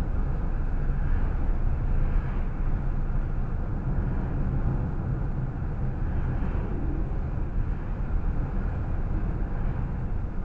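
Steady low rumble of tyre and engine noise inside the cabin of a car driving at about 30 to 35 mph.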